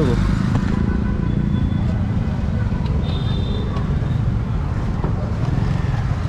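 Royal Enfield Himalayan's single-cylinder engine idling steadily, with street traffic around it.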